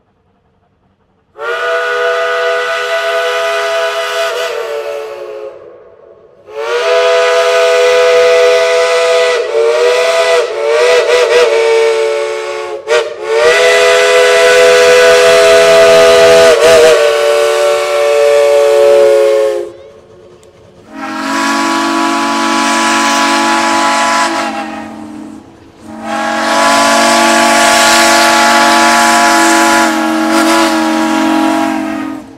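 Steam whistles of a line of Shay geared locomotives blowing five long, loud blasts with short gaps, starting about a second and a half in. Each blast is a chord of several tones, and the last two have a different, deeper chord from another whistle.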